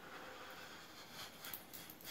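A person exhaling a large cloud of e-cigarette vapour after a direct-to-lung draw: a faint, airy breath out.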